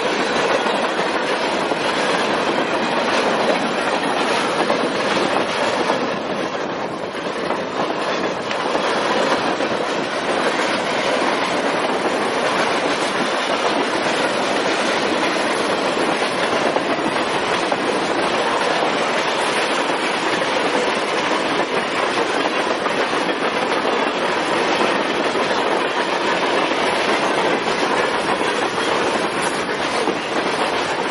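Double-stack intermodal freight cars of a Canadian Pacific train rolling past at speed: a steady, loud rumble of steel wheels on the rails.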